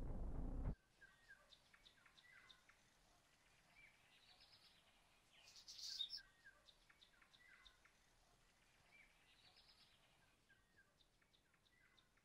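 A low rising swell cuts off suddenly just under a second in, leaving near-quiet room tone with faint songbird chirps and whistles. There is one louder chirp about six seconds in, and the same phrase of song comes twice.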